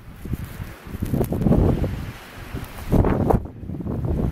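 Strong wind gusting over the microphone in a blowing snowstorm, coming in uneven swells with loud gusts about a second in and again about three seconds in.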